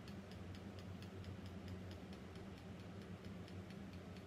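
Faint room tone: a steady low hum with a quiet, rapid, regular ticking, about four or five ticks a second.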